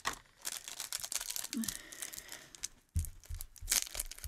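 A snack packet of flavoured crickets being torn open and crinkled by hand: a run of sharp, irregular crackles.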